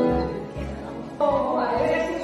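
Amateur women's choir singing sustained notes; the sound dips briefly, then a new phrase comes in louder a little past the middle.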